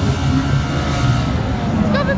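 Engines of 1500cc banger racing cars running in a pile-up, an uneven low drone, with a spectator's voice near the end.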